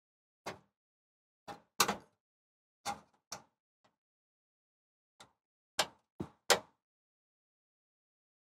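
Short handling clicks and knocks as a small screwdriver and crimp connectors tap against a drop-in cooktop's metal frame while 12-volt ignition wires are fitted to their terminals. There are about ten, irregularly spaced, with the sharpest pair about two seconds in and one of the loudest near the end.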